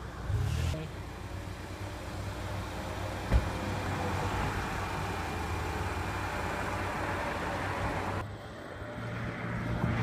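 Outdoor road traffic: a car engine running nearby with a steady low hum over general noise, and a single sharp knock about three seconds in. The noise drops suddenly for a moment about eight seconds in.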